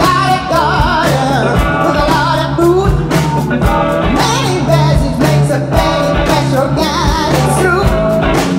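Live blues-rock band: a woman sings with vibrato over electric guitar, bass, keyboard and a drum kit keeping a steady beat.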